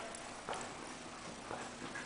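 Hoofbeats of a ridden horse moving on the dirt footing of an indoor arena: a few faint, soft thuds.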